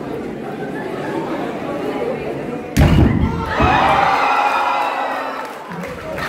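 A hollow concrete block struck and broken with a bare hand: one sharp, heavy crack about three seconds in. The crowd chatters before it and breaks into shouts and cheers right after.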